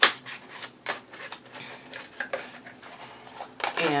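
Packaging of a nail stamping mat being opened and handled: a sharp snap at the start, then irregular crinkling and rustling.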